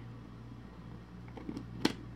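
Quiet room tone with a steady low hum. Near the end comes one sharp click from the plastic jar of loose setting powder being handled in the hands, with a fainter tick just before it.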